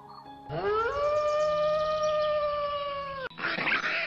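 A wolf howl: one long call that rises in pitch, is held steady and cuts off suddenly about three seconds in, followed by rougher, yelping animal calls. Faint background music underneath.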